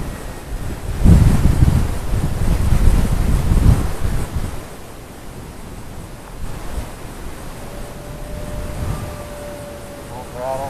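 Wind buffeting the microphone in gusts, strongest from about one to four and a half seconds in. In the last couple of seconds comes a faint steady whine from the small RC plane's brushless motor and propeller in flight.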